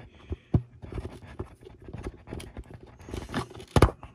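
A screw-in eye hook slowly pulling a pushed-in dust cap back out on a Sansui woofer: scattered crinkly scrapes and small clicks from the cap and hook. There is a sharp click about half a second in and two sharp knocks just before the end.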